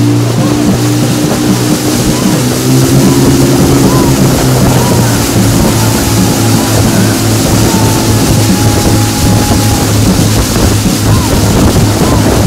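Motorboat engine running steadily under a loud rush of wind and water.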